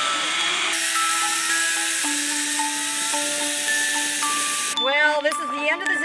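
Zipline trolley pulleys running along a steel cable: a loud, steady whirring hiss with a slowly rising whine in it. It stops abruptly about five seconds in, with sustained background music notes underneath throughout.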